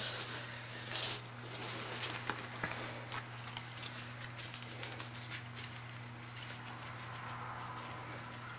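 Playing cards being scooped up off a carpet and squared into a pile: a few soft rustles and taps in the first three seconds, then only a steady low hum.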